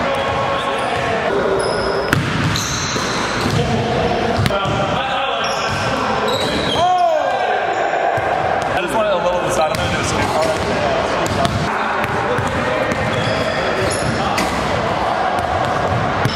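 A basketball bouncing on a hardwood gym floor, with people's voices echoing in the large hall. About halfway through there is a long call that falls in pitch.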